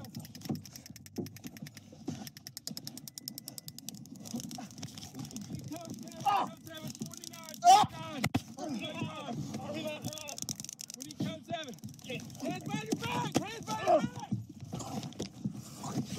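A man's voice groaning and crying out in pain without clear words, close to a body-worn microphone. It is loudest in one sharp cry about halfway through. Under it runs rustling and scraping from the camera being knocked about.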